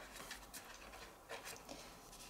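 Faint rustling of a sheet of watercolour card being handled and flexed back flat after heat drying, with a few small soft scuffs.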